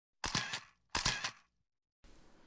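Camera shutter sound effect, fired twice under a second apart, each release a quick cluster of sharp mechanical clicks.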